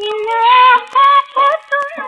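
A woman singing a 1950s Hindi film song with vibrato on the held notes, over a light orchestral accompaniment, played from a mono vinyl LP. Faint surface clicks from the record run under the music.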